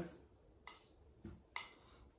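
Mostly quiet, with three faint short clicks and drips spread through the middle. They come from water dripping off a wooden potter's rib that has just been dipped in water, and from wet hands handling it.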